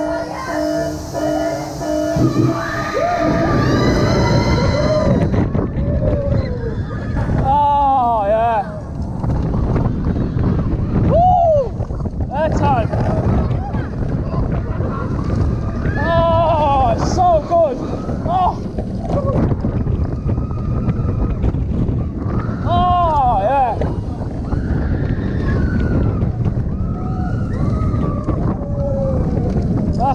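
Vekoma launched roller coaster ride heard from a rider's seat. Steady tones sound in the launch tunnel and cut off about two seconds in. The launch follows, and then a continuous rush of wind on the microphone with the train's track rumble, while riders scream and whoop again and again through the course.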